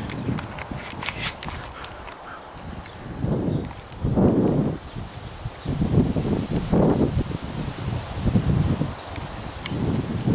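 Wind buffeting the microphone in irregular gusts, a low rumble that swells and drops several times, with scattered light clicks.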